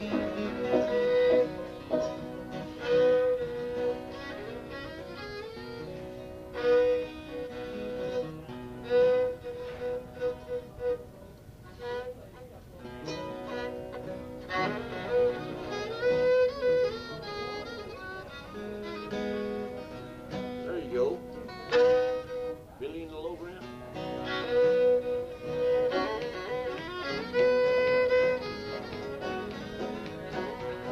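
Old-time Ozarks fiddle tune played on a fiddle with guitar accompaniment.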